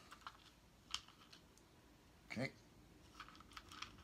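Faint, scattered light clicks and taps of small cardboard game tokens and cards being handled on a tabletop, with a few quick clicks bunched together near the end.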